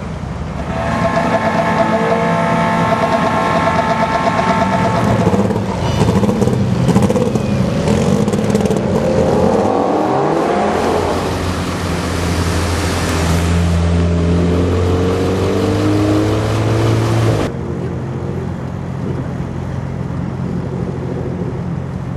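Car engines at a drag race, revving and accelerating with their pitch rising and falling, then an engine running steadily close by. About three-quarters of the way through the sound cuts abruptly to a quieter, steady engine hum.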